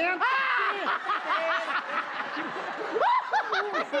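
Men laughing and yelping in short, high, rising-and-falling cries, with bursts of them about the first second and again near three seconds.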